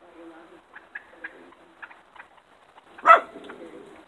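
Wild turkeys clucking and purring softly, with scattered short clicks and one loud, sharp call about three seconds in.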